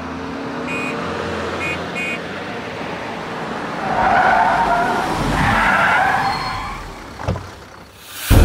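Car driving with road noise, then tyres squealing loudly for about two seconds midway as it brakes hard to a stop, followed by a short knock near the end.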